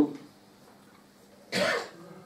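A single short cough about one and a half seconds in, after the tail end of a man's speech.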